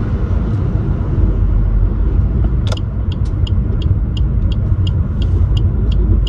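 Car cabin noise while driving: a steady low engine and road rumble. From a little under halfway in, a light regular ticking joins it, about three ticks a second.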